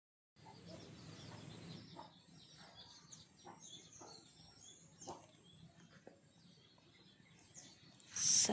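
Faint bird chirping, many short high calls in the first five seconds, thinning out later, over near silence with a few soft taps.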